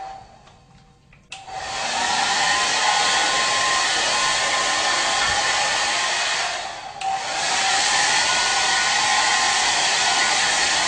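Handheld hair dryer blowing with a steady rushing noise and a faint motor whine. It falls away at the start, cuts sharply back in after about a second, and dips briefly again about seven seconds in.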